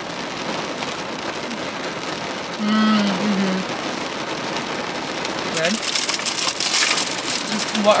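Rain falling steadily on a car's roof and windows, heard from inside the cabin. From about five and a half seconds in, crackly rustling of snack packaging being handled comes over it.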